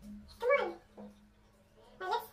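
A child's short vocal sound about half a second in, falling in pitch, over a faint steady hum.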